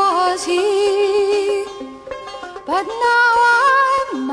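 Instrumental folk-rock music: plucked banjo and sitar playing a melody with wavering, sliding pitch bends.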